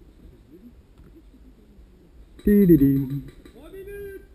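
A man's short vocal exclamation with no clear words, about two and a half seconds in and lasting under a second, followed by a fainter voiced sound near the end. The first half is quiet background.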